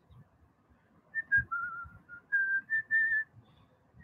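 A man whistling softly to himself: a short string of held notes stepping up and down in pitch, starting about a second in.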